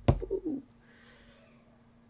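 A man's voice making a short wordless sound that falls in pitch, like a coo, followed by a faint breathy hiss, over a faint steady hum.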